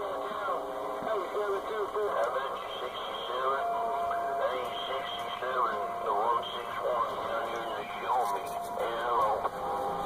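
CB radio receiving long-distance skip on the 11-metre AM band: several distant stations talk over one another in a pileup, their voices garbled, thin and narrow through the radio's speaker, with steady whistles now and then in the mix.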